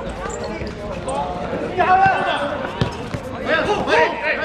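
Players calling out to each other across a football court in several short shouts, with a few sharp thuds of the ball being kicked, the clearest near the end of the second half.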